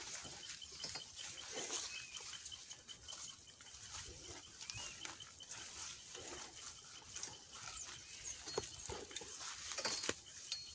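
Rustling of tall grass and leafy brush as people push through dense bush on foot, with soft breathy sounds now and then and a few sharp twig snaps near the end. A faint high chirp repeats about four times a second through the first half.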